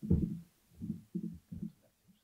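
Footsteps on a hollow wooden stage floor, picked up through the stand microphone as a few irregular dull thuds, the first one the loudest.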